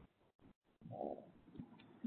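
Near silence: room tone in a pause between words, with one faint, short low sound about a second in.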